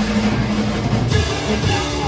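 Four-piece rock band playing live with electric guitars, bass guitar and drum kit, in a short instrumental stretch between sung lines.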